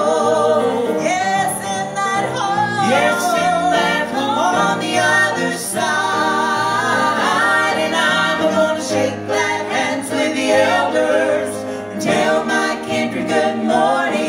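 A vocal trio, two women and a man, singing a gospel song together in harmony into handheld microphones, without a break.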